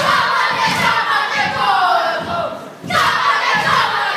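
A group of boys chanting a haka in unison: loud, drawn-out shouted lines that fall in pitch, over a regular low beat about twice a second. The chant breaks off briefly just before three seconds, then the next shouted line begins.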